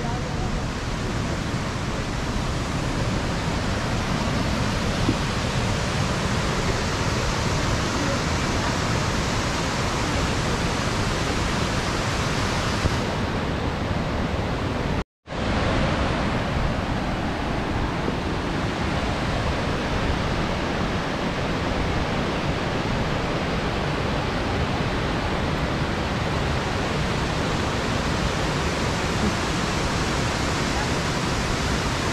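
Steady rushing of a large waterfall, the Krka river cascading over its travertine steps, with a momentary dropout about halfway through.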